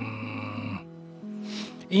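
Soft background music, with a brief steady low hum from a person's voice in the first second that then stops.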